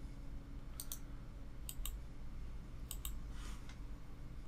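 Computer mouse button clicks: three quick double clicks about a second apart, over a faint steady electrical hum.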